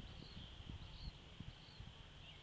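Quiet outdoor ambience with a few faint, high chirps over low thumps and rumbles from the handheld camera, with one thump right at the start.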